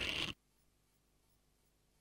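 A short rustling scrape right at a desk microphone, cut off abruptly about a third of a second in, then near silence: the open microphone goes dead as the speaker finishes.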